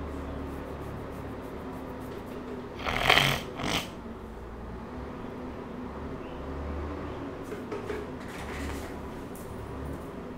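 Electronic keyboard sustaining a chord on the six with notes held steadily. There is a short hissing burst about three seconds in and a smaller one just after.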